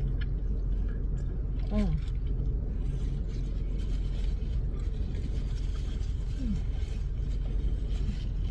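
Steady low drone of a car idling, heard from inside the cabin, with a brief "oh" about two seconds in.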